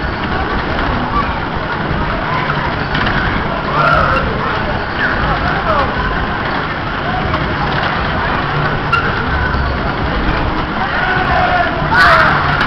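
1975 Mack Musik Express ride running at full speed: a steady rumble of the cars sweeping round the hilly circular track, heard from on board, with riders' shouts and whoops over it.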